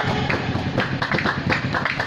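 Fast rhythmic hand-clapping by a seated didong troupe, several sharp claps a second, filling a break in the singing.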